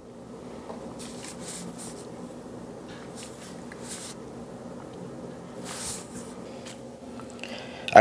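A low steady room hum with a few short hissing breaths through the nose, the loudest about six seconds in.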